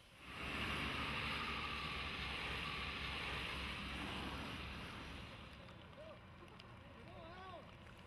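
Road traffic passing close by on a highway: a heavy vehicle goes past with engine and tyre noise, loud at first and dying away over about five seconds, with some wind on the microphone.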